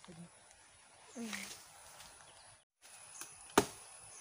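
A single sharp knock or chop about three and a half seconds in, against quiet outdoor background, with a brief falling voice sound about a second in.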